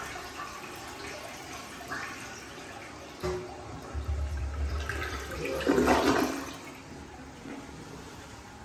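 A 1936 Standard compact toilet flushing: water swirling and rushing down the bowl, growing loudest about six seconds in, then dying away.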